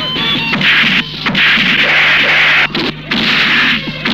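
Dubbed film fight sound effects: whooshing swings and punch and kick impacts in three long, loud flurries.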